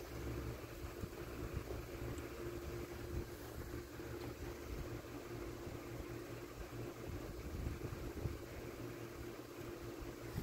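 A steady low hum with a faint steady tone above it, and a few faint clicks from handling the batteries and wiring inside the radio chassis.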